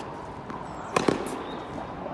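Tennis ball impacts in a rally: two sharp pops a split second apart about halfway through, a bounce and a racket strike on the ball.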